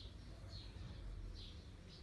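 Small birds chirping, a few short high calls, over a faint low rumble.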